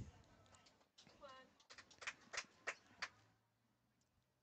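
Faint sharp clicks, about six in a second and a half, just after a short falling chirp; otherwise near silence.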